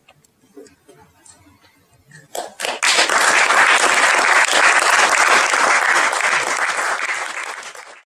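Audience applauding at the close of a talk: a few first claps about two and a half seconds in, then steady clapping from many hands, tailing off near the end.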